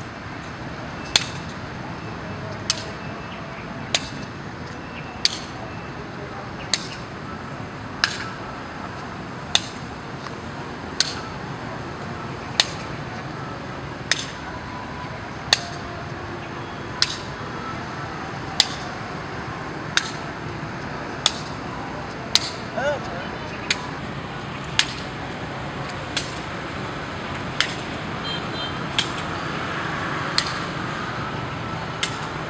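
A shuttlecock kicked back and forth between players' feet, a sharp tap about every second and a half in an unbroken rally, over steady background noise.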